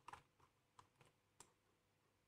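Faint, sharp clicks from computer input while brush strokes are painted, about five spread over two seconds, against near silence.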